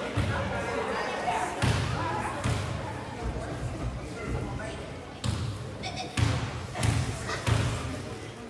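Basketball bounced on a hardwood gym floor: single echoing thumps, a few spaced out early, then a run of about one every 0.7 s in the second half, the dribbles a shooter takes at the free-throw line.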